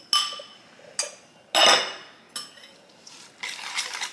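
A wire whisk and a ceramic bowl clinking against a stainless steel mixing bowl as egg yolks are scraped in: a few separate clinks, the loudest about a second and a half in, ringing briefly. Near the end, quick whisking strokes against the steel bowl begin.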